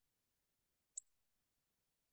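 Near silence broken by a single short, sharp computer-mouse click about a second in.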